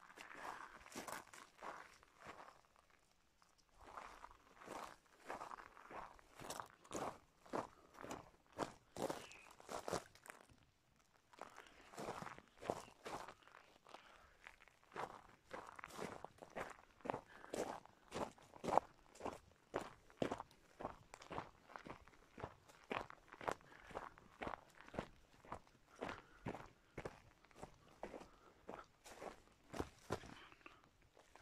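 Footsteps crunching on dry pine needles and loose gravel at a steady walking pace of about two steps a second, with two brief pauses.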